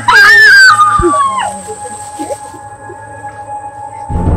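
A loud, high howling cry that climbs, holds, then steps down in pitch and stops about a second and a half in, over a steady droning horror-film score.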